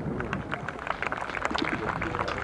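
Golf gallery applauding a good approach shot onto the green: a scattered patter of clapping that grows a little fuller toward the end.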